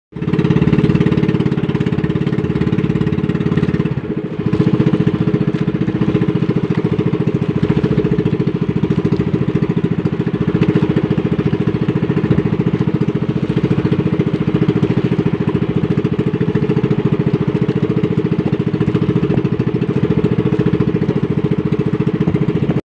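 Small single-engine motor of a bangka outrigger fishing boat running steadily under way, a rapid even beat, with a brief dip in level about four seconds in.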